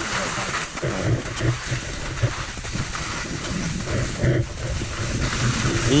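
Skis running over wet, slushy snow: a steady hiss of the bases and edges on slush, with uneven low rumbling from wind on the microphone.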